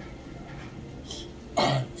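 A man clearing his throat once, a short loud rasp near the end, over a quiet steady background hum.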